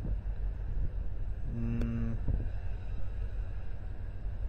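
A man's held hesitation hum, one steady low 'mmm' lasting under a second about a second and a half in, over a constant low electrical hum from the recording.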